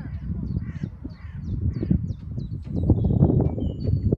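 Wind rumbling on the microphone, growing louder in the last second, with birds calling over it in a string of short chirps and thin whistles.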